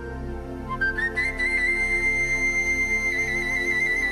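Russian folk orchestra playing an instrumental introduction: a high flute-like melody steps up about a second in and holds one long note, wavering with vibrato near the end, over a steady accompaniment of plucked domras and balalaikas and button accordion.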